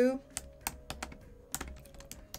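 Typing on a computer keyboard: several separate key clicks at an uneven pace.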